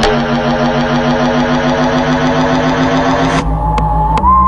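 Electronic dance music: a dense, buzzing synth chord held steady for about three seconds, then cut off abruptly, giving way to a deep bass note and a single high held tone.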